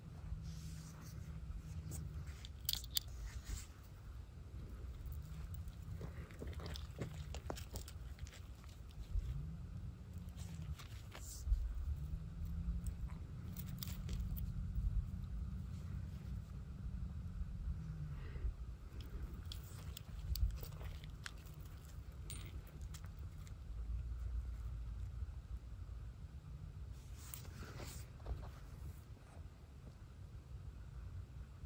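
Irregular crunching of feet on gravelly, sandy ground during a slow walk, over a low steady rumble.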